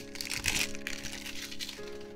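Foil booster-pack wrapper crinkling as the cards are pulled out of it, in a few quick bursts within the first second, over steady background music.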